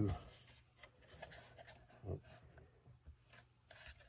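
Faint rubbing and light taps of a thin plywood deck piece being shifted and pressed down onto a model ship's wooden frame, with a muttered "oops" about two seconds in.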